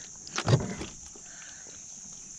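Handling noise from unhooking a large flathead catfish by hand: a brief knock and rustle about half a second in, then faint small sounds over a steady high hiss.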